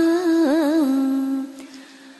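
A single voice chanting Vietnamese verse holds out the last note of a line, with a wavering turn in the pitch about half a second in. It then fades away about a second and a half in.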